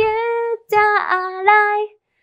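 Young female voices singing a line of a song with no accompaniment, in long held notes with two short breaths between them.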